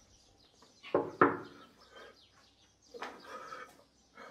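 Two quick knocks on a wooden door about a second in. Fainter short pitched sounds come before them and again later.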